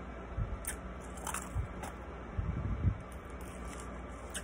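Ice being crunched between the teeth and chewed close to the microphone: a string of short, crisp crunches with dull thuds from the jaw, most of them bunched about two and a half to three seconds in.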